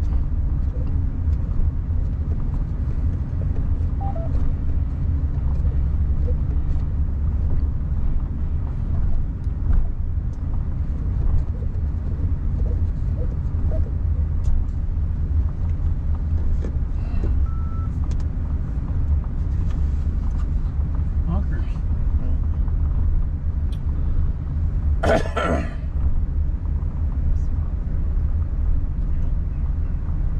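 Steady low rumble of a car driving slowly, with a brief harsh noise lasting about a second near the end.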